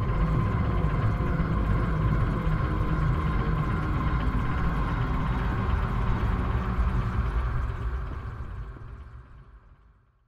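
Steady low rumbling drone from the closing soundtrack, with a faint held high tone over it, fading out over the last two seconds.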